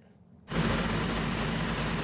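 After a brief hush, a loud, steady rushing noise with a low engine hum underneath starts about half a second in. It is the ambient sound of a cell-phone recording at a burning house, with a fire engine running beside it.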